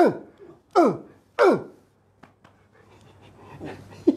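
A man coughing three times in quick succession, each short, loud cough sliding sharply down in pitch, followed by a few faint clicks.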